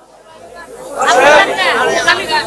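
Speech: after a brief near-quiet start, a voice comes in about a second in through a stage microphone, its pitch rising and falling.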